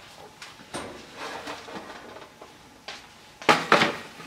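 Kitchenware being set down on a countertop: a metal baking sheet and ceramic ramekin dishes knock against it. The loudest part is a quick run of sharp knocks near the end, with softer rubbing in between as the counter is wiped with a cloth.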